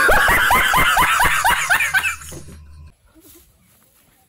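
A man's loud burst of laughter, about a dozen quick ha-ha pulses over two seconds, then fading away. It is a nervous laugh on touching an electric elephant fence that gives no shock.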